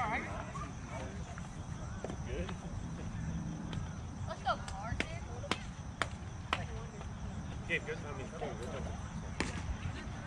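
Youth baseball game sounds: distant voices of players and spectators calling out over a steady low rumble, broken by a handful of sharp smacks, four of them about half a second apart in the middle.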